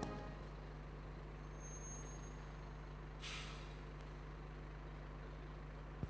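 Setra double-decker coach running at low speed, faint and steady, with one short air-brake hiss about three seconds in.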